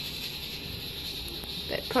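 Steady low hiss of room tone with no distinct sound events. A man's voice starts just before the end.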